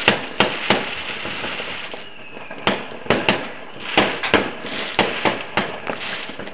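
Aerial fireworks going off: about a dozen sharp bangs of bursting shells with echoing tails, a short lull in the first half, then bangs coming thick and fast. A faint falling whistle is heard just after two seconds in.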